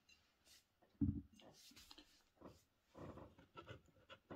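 A glass beer bottle set down on a table with one dull knock about a second in, followed by faint rustles and small clicks of handling.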